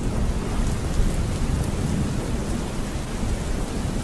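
Steady rain falling, with a low rumble of thunder underneath.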